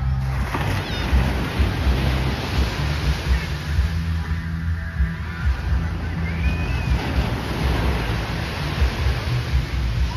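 Background music with a steady bass line, over the continuous noise of small waves breaking on a sandy beach.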